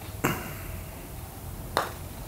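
A putter face striking a golf ball on a test putt: one sharp click with a short ring about a quarter second in. A second, sharper click follows near the end.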